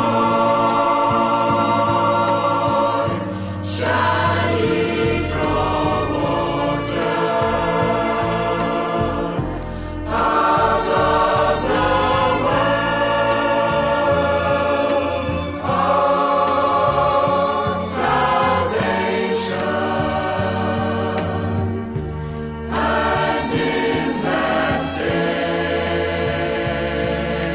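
A choir sings a scripture song over instrumental accompaniment, in long held phrases.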